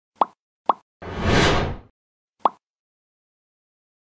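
Logo intro sound effects: two quick pops, a swelling whoosh lasting about a second, then a third pop.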